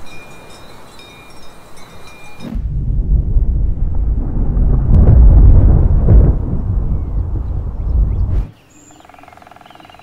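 Cowbells ringing lightly over a breezy ambience, cut off about two and a half seconds in by a loud, long rumble of thunder. The thunder lasts about six seconds and stops suddenly, leaving a much quieter outdoor ambience.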